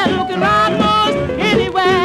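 A late-1950s R&B jump blues record plays from a 45 rpm single: full band with a melody line sliding between pitches.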